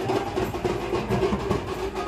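Dhol and tasha drums playing together in a dense, unbroken rhythm of rapid strokes.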